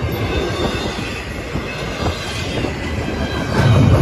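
Double-stack intermodal well cars rolling past over a grade crossing: a steady rumble and clatter of steel wheels on the rails, louder near the end.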